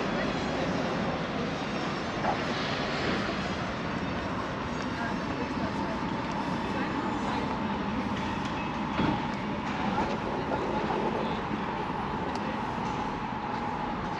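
Outdoor town-square ambience: a steady wash of distant traffic with voices of passers-by. A faint steady tone joins about six seconds in.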